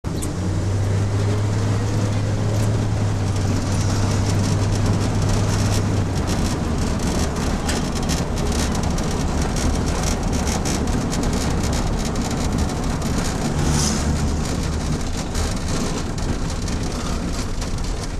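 Car driving, heard from inside the cabin: engine and road noise, a steady low hum for the first few seconds, then rougher noise with many small rattles and knocks through the middle.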